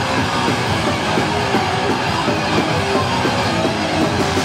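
Punk band playing live: electric guitars, bass guitar and drum kit in a fast, loud instrumental riff with no vocals.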